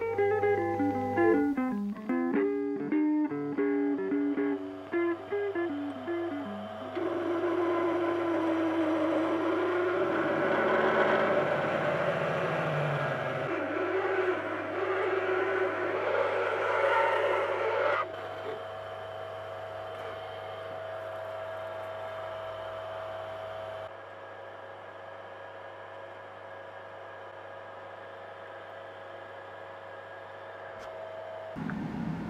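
Guitar music, picked notes at first, then a fuller, steadier passage. More than halfway through it drops to a quieter steady hum with held tones, and it falls quieter again later on.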